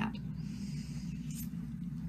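Faint rustling of cloth being handled as a fabric packet is opened and laid out, over a steady low hum.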